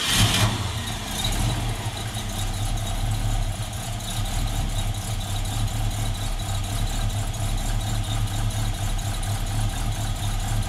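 Ford 289 cubic-inch V8 firing up with a short flare, then settling into a steady idle.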